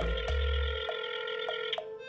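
Mobile phone ringing: a steady electronic ring of several held tones with faint regular ticks, cutting off just before the end.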